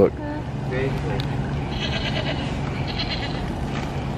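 A children's push-button animal sound book plays a recorded farm-animal call through its small speaker. The call is a wavering, pulsing sound lasting about a second and a half, near the middle.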